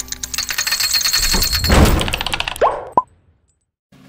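Intro sound effects: a fast run of mechanical clicks over a low rumble that swells twice, then two quick rising pops, cutting off about three seconds in.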